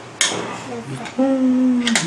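A light clink and scrape of a spoon against a small cup just after the start, then a person's voice holding one steady tone for about a second.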